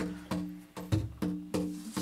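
Jam-session music: a drum beat with a low thump about 100 times a minute under a steady, held low chord.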